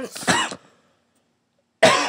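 A woman coughing and clearing her throat: a short rough vocal sound just after the start, a pause, then a sudden loud cough near the end.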